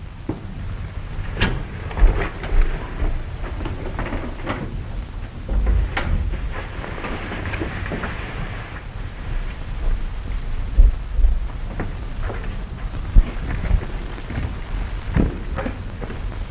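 Hiss and crackle of an old optical film soundtrack, with scattered low thumps and knocks at intervals and a brief rise in hiss near the middle.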